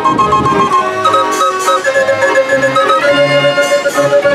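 Dutch street organ (draaiorgel) playing a tune on its pipes: a bright melody over chords, with short bass notes on a regular beat.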